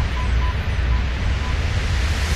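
Title-sequence soundtrack: a deep, steady rumble under a hiss, with several short electronic beeps on one high pitch at irregular intervals.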